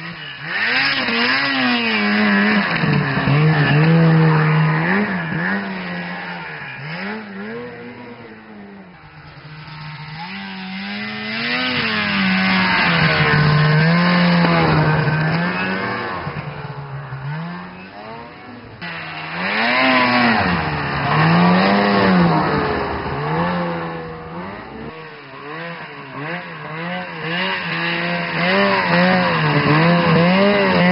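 Snowmobile engines revving up and down as several machines ride past one after another, each getting louder as it approaches and fading as it moves away.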